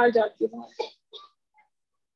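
A person's voice coming through a video call, breaking into short, choppy fragments from a poor connection and cutting out about a second in.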